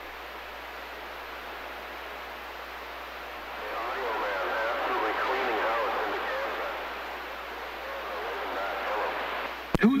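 CB radio receiver hissing with static, a weak, distant station's voice coming faintly through the noise from about three and a half seconds in and fading again near the end.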